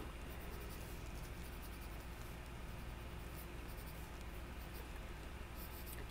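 Colored pencil rubbing faintly and steadily on hot-press watercolor paper as color is layered in with shading strokes.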